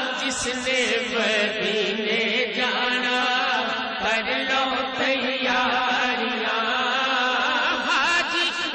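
Male voices chanting a devotional naat over a microphone, with long, wavering sung notes and no break.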